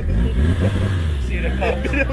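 BMW E30's engine running with a steady low rumble as the car pulls away, with voices over it in the second half.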